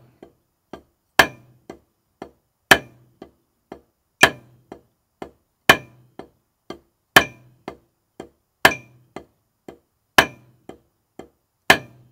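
Snare drum played with sticks: a single paradiddle sticking in slow triplets at 40 beats a minute, with a loud accented stroke on every beat, about every second and a half, and two soft taps between each.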